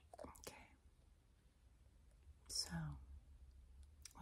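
Very quiet: a woman's soft, breathy whispering voice, one short utterance about two and a half seconds in, with a few faint clicks near the start from a glass essential-oil dropper bottle being handled.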